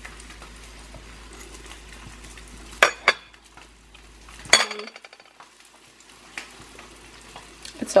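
A metal fork tapping and clinking against a ceramic plate while a pancake is cut and eaten: two sharp taps about three seconds in, then a louder ringing clink a second later. A steady faint hiss runs underneath.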